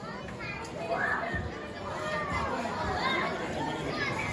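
Audience chatter: many overlapping voices of small children and adults talking and calling out at once, with no music yet.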